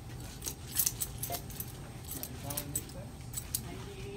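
Irregular light clicks and jingles, several a second, with faint voices in the background.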